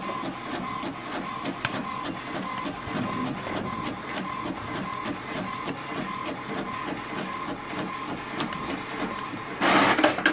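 HP Envy 6030 inkjet all-in-one printer printing a black-and-white copy: the print mechanism runs steadily with a pulsing tone repeating about two to three times a second. A short, louder rush comes near the end.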